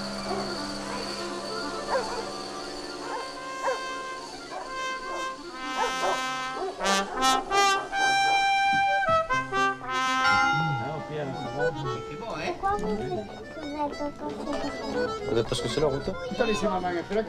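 Film soundtrack music with brass instruments: quiet held tones at first, then a louder passage of sustained notes in the middle, easing off toward the end.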